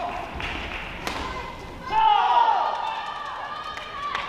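Badminton doubles rally on an indoor court: a sharp racket hit on the shuttlecock about a second in. About two seconds in comes a loud burst of high, falling squeals from players' court shoes as the point ends.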